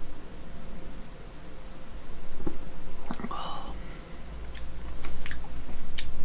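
A man sipping beer from a glass, then swallowing and making small wet mouth clicks and lip smacks as he tastes it.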